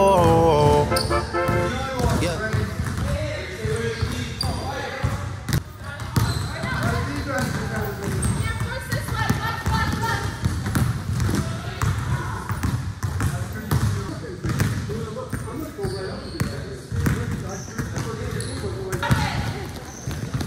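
Basketballs bouncing on a hard gym floor in a quick, irregular run of knocks as players dribble and pass, with indistinct voices echoing in the hall. Brass music fades out in the first second.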